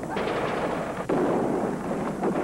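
Movie battle-scene soundtrack: rapid gunfire, including machine-gun fire, over a continuous din, with one sharp crack about a second in.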